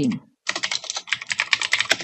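Computer keyboard typing: a quick run of many key clicks starting about half a second in and lasting about a second and a half.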